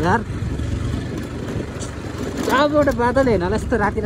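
Motorcycle engine running steadily under the rider on a rough dirt road, a low hum throughout, with a man's voice calling out over it from about halfway through.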